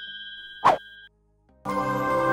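Animation sound effects: a bell-like chime rings and fades out, and a short pop sounds about two-thirds of a second in. Near the end, music comes in on a held chord.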